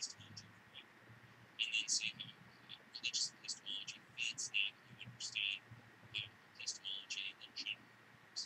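Garbled, whisper-like speech over a video call: only the hissy high end of a voice comes through, in quick bursts at the pace of talking, while the body of the voice is missing, as when a call breaks up on a poor internet connection. A faint low hum runs underneath.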